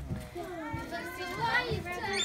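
Young children's voices chattering and calling out over one another, with a brief low thump at the very start.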